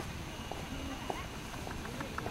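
Faint background chatter of people talking, with a few light taps or clicks over steady outdoor ambience.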